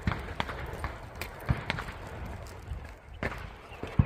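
Footsteps on a gravel shooting range, irregular crunching steps over a low, steady outdoor rumble.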